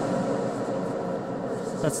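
Processed sound from a TC-Helicon Perform-VE vocal effects unit with its filter effect on, dying away: a dense, steady wash with held tones that slowly fades. A man's voice comes back near the end.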